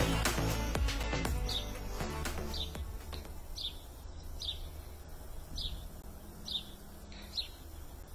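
A bird calling outdoors: a short, high chirp repeated roughly once a second, starting about a second and a half in.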